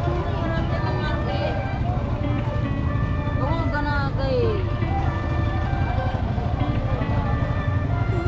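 Busy street ambience: a steady low rumble of motorcycle and vehicle engines, with people talking and music playing throughout.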